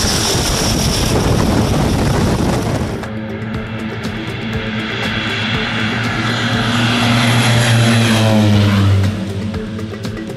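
Propeller plane's engine running with loud propeller wash beside the aircraft. After a cut about three seconds in, the plane's engine drone is heard on its takeoff run and climb-out, falling in pitch as it passes near the end, with background music underneath.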